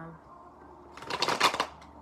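A deck of tarot cards being shuffled by hand: a quick, dense flurry of card clicks about a second in, lasting under a second.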